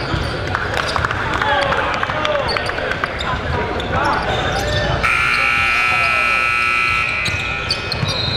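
Basketball game sounds in a large gym: a ball bouncing and sneakers squeaking on the hardwood over crowd chatter. About five seconds in, an arena buzzer sounds steadily for about two seconds, then cuts off.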